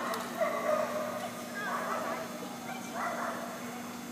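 Dogs barking in a few short calls, about half a second in, at about a second and a half and at about three seconds, over a steady low hum.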